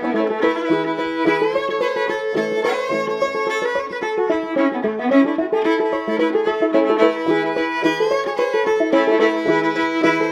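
Old-time fiddle tune played as a duet on fiddle and clawhammer banjo, an 11-inch mahogany and ebony banjo with a Dobson tone ring and skin head. The bowed fiddle carries the melody over the banjo's steady plucked rhythm.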